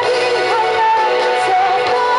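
A woman singing a Malay pop song into a microphone over a backing music track, holding long notes that waver slightly, with a rise in pitch about half a second in.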